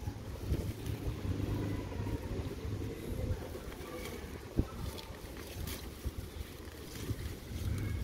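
Wind buffeting the phone's microphone as a steady low rumble, with scattered scrapes and crackles from hands digging in dry soil and one sharp knock about halfway through.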